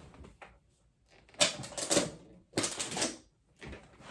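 Clattering clicks and knocks of hard objects being handled and shifted around a desk, in two short bursts, the first about a second and a half in and the second about a second later.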